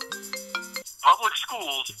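Mobile phone ringing with a marimba-style ringtone of quick stepping notes, which stops just under a second in. About a second in, a recorded robocall voice announcing school closures speaks through the phone's speaker, sounding thin and telephone-like.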